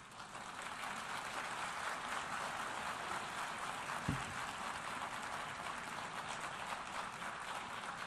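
Audience applauding: steady, even clapping that swells in over the first second and holds until the speech resumes. A single low thump about halfway through.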